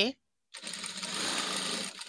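Industrial sewing machine running a short burst of stitching as fabric is fed under the needle. It starts about half a second in and drops quieter near the end.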